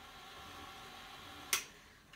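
KitchenAid stand mixer running with its wire whisk attachment in liquid ingredients, a steady motor hum, then a sharp click about one and a half seconds in as it is switched off and the hum stops.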